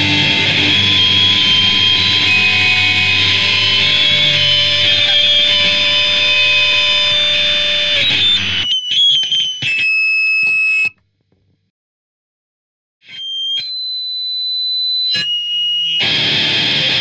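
D-beat raw punk band playing, with distorted electric guitars, bass and drums, until the band stops about eight and a half seconds in. Held, high guitar feedback tones then ring on, stepping in pitch, and cut off into about two seconds of silence. The feedback returns and swells louder toward the end.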